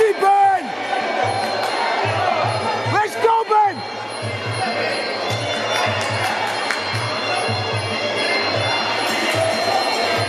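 Music with a steady bass beat playing over crowd noise in a hall, with two short raised voices cutting through near the start and about three seconds in.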